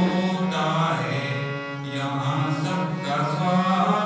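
A man singing a devotional song through a microphone in long, held notes, with a harmonium sounding beneath the voice.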